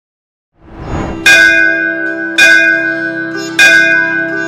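A large bell struck three times, about a second apart, each stroke ringing on with many tones, over a sustained music drone that swells in about half a second in.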